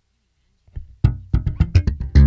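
Electric bass guitar played through the Zoom B6's Ampeg SVT amp model. After a near-quiet first second, a quick run of plucked notes with sharp attacks begins.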